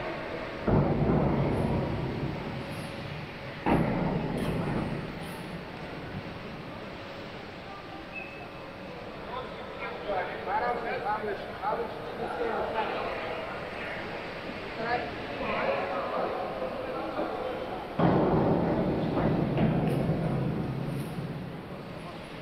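Divers splashing into a swimming pool three times, about a second in, near four seconds and near eighteen seconds. Each splash is sudden and dies away over a second or two in the echoing pool hall, with indistinct voices between them.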